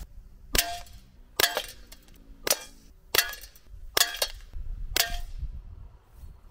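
Gas-powered Colt Single Action Army air revolver firing six .177 pellets in a row, six sharp shots about a second apart.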